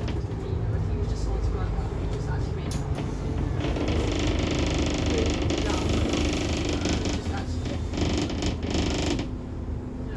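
Ride inside a Scania N230UD double-decker bus on the move: steady low rumble from its five-cylinder diesel engine and the road. A hiss rises from about four seconds in and fades again near the end.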